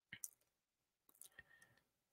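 Near silence broken by a few faint clicks: two near the start and two or three more a little past the middle.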